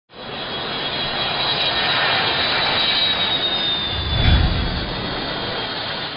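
Jet aircraft engines running loud and steady, with a high turbine whine that drifts slightly down in pitch and a deep rumble swelling about four seconds in.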